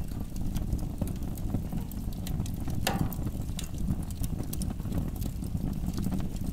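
Close-up recording of a fire burning in a fireplace, played dry without any effect: a steady low rumble of flames with scattered sharp crackles and pops, one louder pop about three seconds in.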